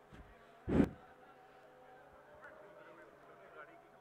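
A single short, loud thump about a second in, over faint background voices.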